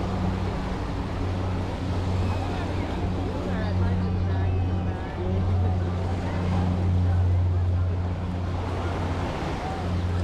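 Small waves washing up a sandy beach, with beachgoers' voices in the background and a steady low drone underneath.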